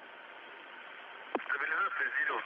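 Air-to-ground radio channel from the spacecraft, with a steady hiss and a sharp click about a second and a half in. A voice then comes in over the radio near the end.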